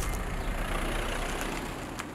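A car passing close by on the road: engine and tyre noise with a deep low rumble, starting suddenly and easing off toward the end.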